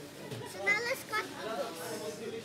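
Children's voices talking, indistinct.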